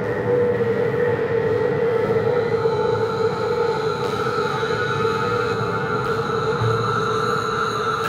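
Ambient drone music made from sculpted static and noise: a steady held tone over a rumbling noise bed, with fainter higher tones above, unchanging throughout.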